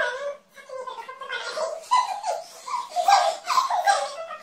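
Young women laughing and giggling, mixed with bits of chatter.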